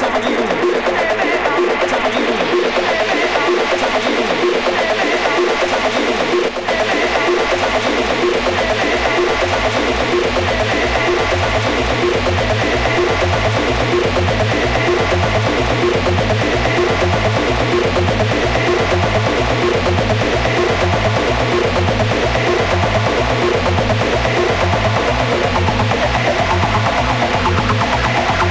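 Instrumental passage of a club house track: a steady four-on-the-floor kick drum under layered electronic synth tones, with a brief break about six seconds in.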